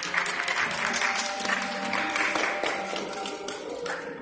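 Audience applauding loudly in a hall, the clapping tailing off near the end, with a faint held musical tone underneath.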